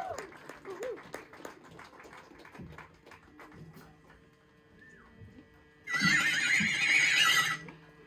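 Faint audience chatter and whoops, then about six seconds in a loud, high, wavering yell that lasts about a second and a half.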